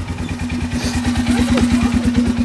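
Quad (ATV) engine running at low revs, a steady rapid pulse that grows slightly louder as the quad is driven up onto the other quad.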